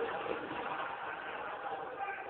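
Sitcom studio audience laughing steadily, played from a television and picked up by a phone, so it sounds thin and dull.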